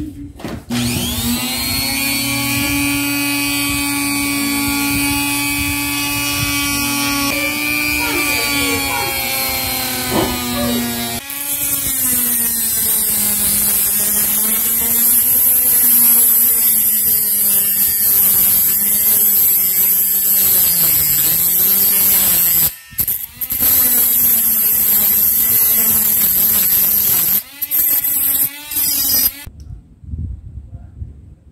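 Handheld rotary tool with a thin cut-off disc starts up and runs steadily, then cuts a protruding metal screw on a wooden coil tattoo machine. As the disc bites, the motor's pitch wavers up and down under a grinding hiss. It stops briefly twice and cuts off just before the end.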